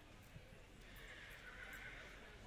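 A horse whinnying faintly: one call starting about a second in and lasting about a second.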